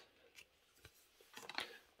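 Faint handling of thin matte-printed tarot cards: a card is slid off the front of the deck and tucked behind, giving a few light ticks and a short cluster of papery rustles about three quarters of the way through.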